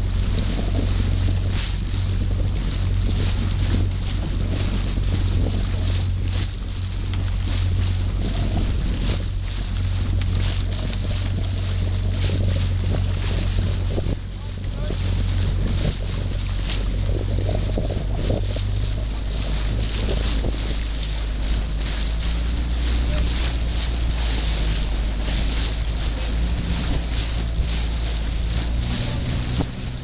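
Small motor boat's outboard engine running steadily, with wind on the microphone and water rushing by; the engine note drops lower about two-thirds of the way through.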